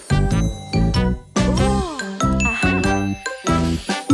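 Children's song backing music with a steady beat and bright chiming notes.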